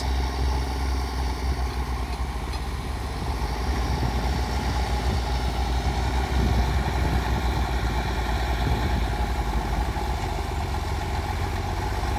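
Large four-wheel-drive diesel farm tractors running steadily as a low, continuous rumble under load, pushing a heavy fishing boat across beach sand. It is more than two tractors can move.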